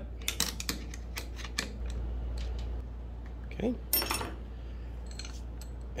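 Small metal clicks and clinks of a box-end wrench working a 10 mm nut loose on an air file's sanding deck, with one louder metal clink about four seconds in.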